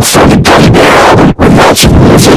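Heavily distorted, clipped audio from stacked video-editor effects, reduced to loud harsh noise in chunks, with a brief drop about 1.4 s in.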